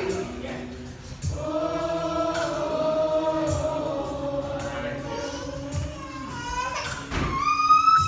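Recorded gospel song with a choir singing long held notes over a slow beat; a high lead voice rises and holds a note near the end.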